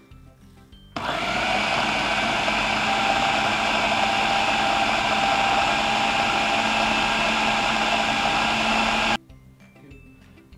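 Electric food processor running for about eight seconds, mincing raw beef together with chunks of beef kidney fat into a smooth mince. It is a loud, steady whirr that starts suddenly about a second in and cuts off suddenly near the end.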